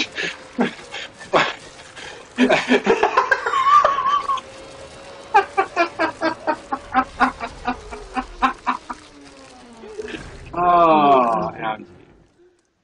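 A man's voice from a film soundtrack: short repeated cries at about three or four a second, over a faint steady hum that slowly drops in pitch, then a long yell falling in pitch near the end.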